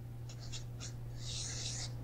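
Faint pen strokes as a diagram is drawn: a few short scratches, then one longer stroke about a second and a half in, over a steady low hum on the tape.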